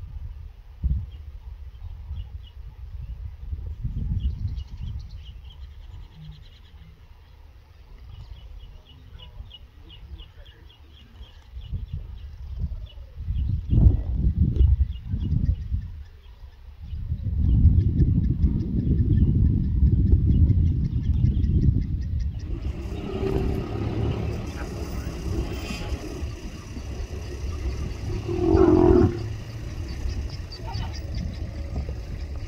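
A mating pair of lions growling in low, rumbling bursts, loudest from about twelve seconds in. Faint, rapid insect ticking runs underneath for the first half.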